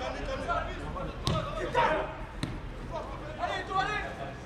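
A football kicked twice, two sharp thuds a little over a second apart, with players' shouts on the pitch around them.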